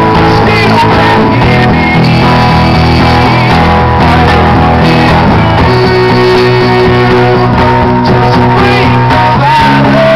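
Live amplified song: a male singer singing over a strummed acoustic guitar, loud and steady throughout.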